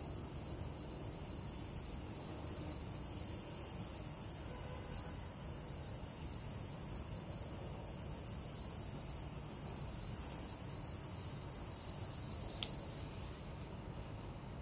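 Butane jet torch lighter's flame hissing steadily as it toasts and lights the foot of a cigar, with a single sharp click near the end.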